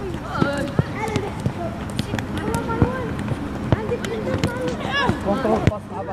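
Young footballers and their coach shouting and calling to one another during a passing drill, broken by several sharp thuds of a football being kicked.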